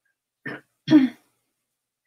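A woman clearing her throat, two short rasps in quick succession, the second louder.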